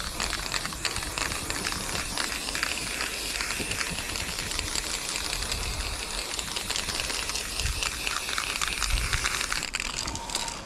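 Aerosol spray-paint can spraying onto a cinder-block wall: a steady hiss with a crackly, spitting texture, which stops at the very end.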